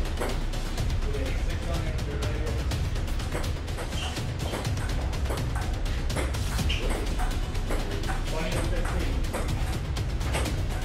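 Music playing over a table-tennis rally, with the sharp clicks of a ping-pong ball striking paddles and table.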